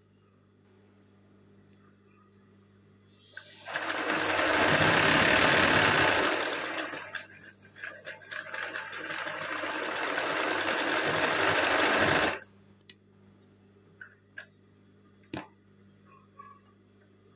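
Sewing machine stitching a zigzag satin stitch. It starts about three and a half seconds in, falters and slows briefly around the middle, runs on again and stops abruptly about twelve seconds in. A few faint clicks follow.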